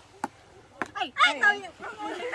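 Two sharp clicks about half a second apart, a ping-pong ball striking the cup-covered table, followed by several voices calling out.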